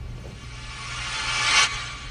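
A rising whoosh that swells for over a second and cuts off suddenly near the end: a transition sound effect laid over a scene cut, with a low steady room hum beneath.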